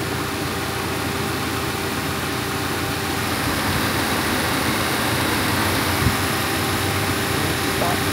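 Subaru Crosstrek's flat-four engine idling steadily with the air conditioning on full, heard close up in the open engine bay. A single sharp click about six seconds in.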